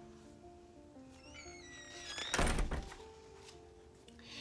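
Soft background music with held notes, a quick run of rising chime-like tones, then a single heavy thud about halfway through: a door-slam sound effect.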